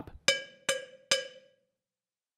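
Sampled cowbell from the GCN Signature Three Cowbells Kontakt library, struck three times with a beater on its higher-pitched playing spot, the hits a little under half a second apart. Each hit rings briefly, and the last ring has died away by about a second and a half in.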